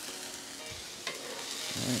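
Diced bell peppers and thin bone-in pork chops sizzling in oil on a hot flat-top griddle: a steady frying hiss, with a single sharp click about a second in.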